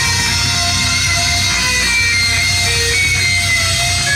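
Live rock band playing an instrumental passage: an electric guitar carries a lead line of held, bent notes over bass and drums.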